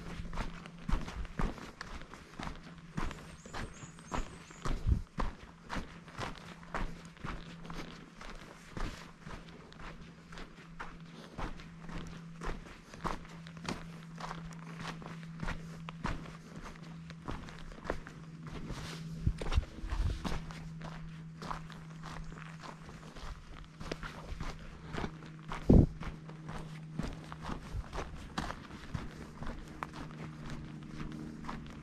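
Footsteps of a hiker walking on a dry dirt forest trail, about two steps a second, with one heavier thump late on, over a steady low hum.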